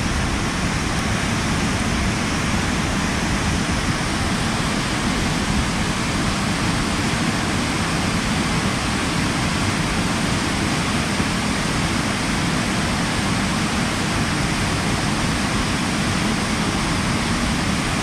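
Running Eagle Falls' waterfall rushing steadily: a constant, even wash of falling water with no breaks.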